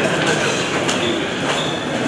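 Footsteps of a group of people climbing marble stairs, shoes scuffing and clicking on the stone, over a steady murmur of voices.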